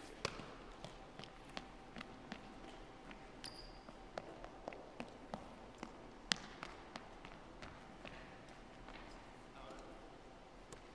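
Basketball sneakers striking a hardwood gym floor during a sprint with stops and turns: quick, irregular sharp footfalls, with a short high squeak about three and a half seconds in.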